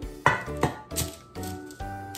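Paper liner crinkling and hands knocking against a metal cake pan as the paper is pressed into it, with three sharp crackles in the first second, the first the loudest, over background music.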